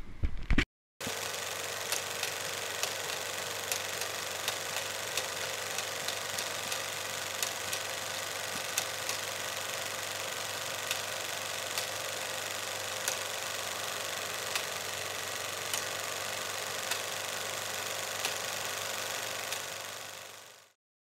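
Vintage film-reel crackle effect: a steady hiss with a faint hum and scattered irregular pops, fading out near the end.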